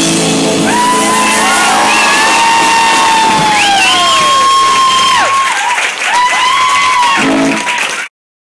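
Live rock band (guitar, bass, drums, vocals) ending a song on a final chord that drops away about a second in, followed by the audience cheering with long whoops and shouts. The sound cuts off abruptly at the end.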